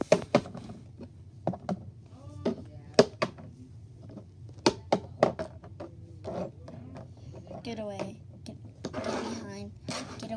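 Irregular sharp taps and knocks of hard plastic toy figures being handled and set down on a plastic tabletop, a dozen or so scattered through the stretch, with short bits of murmured child's voice near the end.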